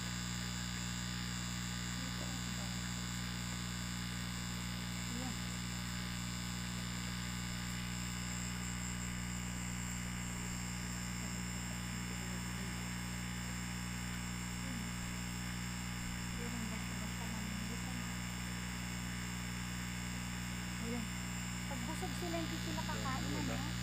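A steady, unchanging low hum with a thin high whine above it, holding at one level throughout. Faint snatches of voices come through now and then.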